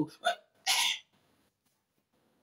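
A man's voice ends a chanted word, then gives a short breathy hiss about two-thirds of a second in, and falls silent.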